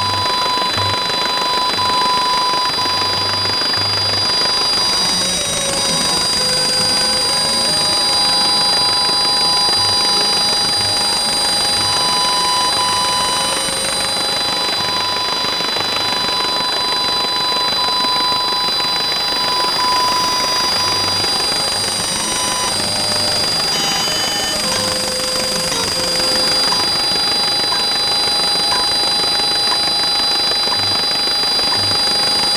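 Steady hiss with several thin, steady, high-pitched tones over it; a lower tone switches on and off and short beeps come and go.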